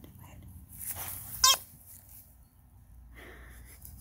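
Noise-making toy dog ball giving one short, wavering squeal about a second and a half in as it is moved.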